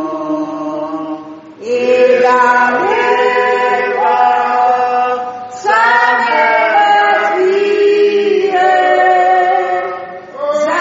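A slow hymn being sung, with long held notes in phrases broken by short pauses about one and a half and five and a half seconds in.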